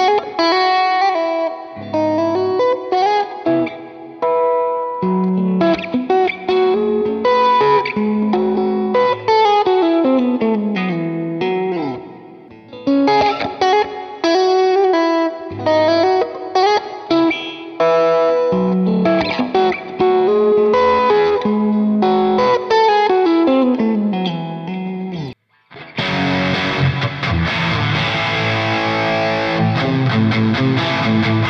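Electric guitar solo in single-note lines with bends, played through an amp with light overdrive: first on a Strat-style guitar with an Alnico V loaded pickguard, then the same phrase again about halfway through on a stock Strat with ceramic pickups. Near the end a heavier, more distorted tone starts.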